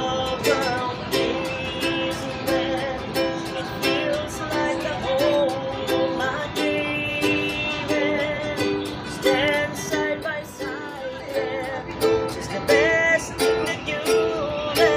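Ukulele strummed in a steady rhythm of chords, with a voice singing along in places.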